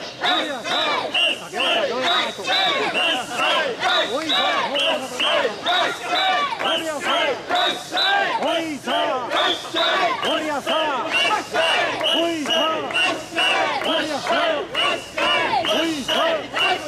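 Crowd of mikoshi carriers chanting "wasshoi, wasshoi" in a quick, steady rhythm as they bear a portable shrine, many voices shouting together. A high steady tone sounds in time with the chant.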